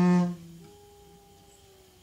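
Free-improvised alto saxophone and acoustic bass duo. A loud held low note breaks off about a third of a second in, leaving a faint, thin sustained tone that slowly fades.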